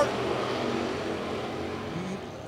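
A pack of dirt late model race cars running on the track, their GM 602 crate small-block V8 engines droning together and easing off a little.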